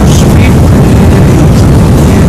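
Loud, steady rush of a waterfall: a dense hiss over a heavy low rumble.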